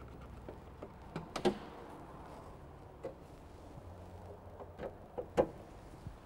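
Car bonnet being unlatched and raised: a few sharp clicks and clunks from the release catch and bonnet, the loudest about a second and a half in, over a faint low hum.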